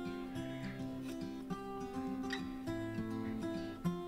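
Quiet background music: acoustic guitar picking single held notes.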